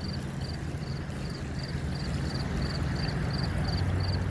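Water running down a small rock waterfall in a garden stream, a steady rushing hiss, with a cricket chirping evenly about two and a half times a second and a low steady hum underneath.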